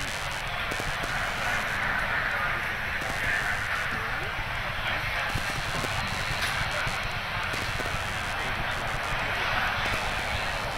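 Indistinct murmur of people's voices over a steady background hiss, with no clear words and no distinct events.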